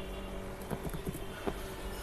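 A handful of light computer keyboard key clicks, spread over about a second, over a steady low hum.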